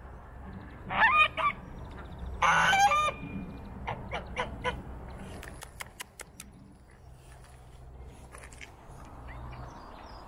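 Geese honking: two loud honks about one and two and a half seconds in, then several shorter, fainter calls.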